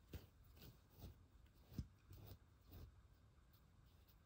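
Near silence with about six faint, short rustles of a wool fabric block and embroidery thread being handled in the fingers.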